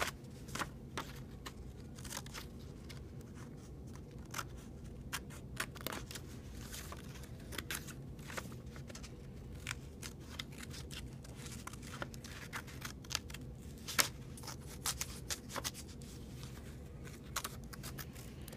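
Small hand scissors snipping through paper in short, irregular cuts, with the paper rustling as it is turned. One snip about 14 seconds in is sharper than the rest.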